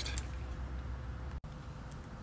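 Faint steady background noise with a low hum and no distinct event, broken by a brief dropout to silence about one and a half seconds in.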